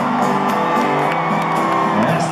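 Live country band playing, acoustic guitars to the fore, in a gap between sung lines, with scattered whoops from the stadium crowd over the music.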